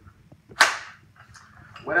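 Gas-powered airsoft pump shotgun giving off one short, sharp burst about half a second in, a puff of gas as the shotgun is worked.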